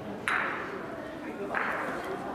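Two sharp clacks of a gateball mallet striking a plastic ball, each with a short ringing tail, the first about a quarter second in and louder, the second near the end.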